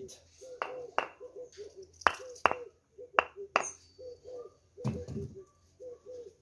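Three pairs of sharp, hard knocks as pieces of very dense knoppiesdoring (knob thorn) firewood are struck together, each pair about half a second apart, in the first few seconds. A dove coos repeatedly in the background.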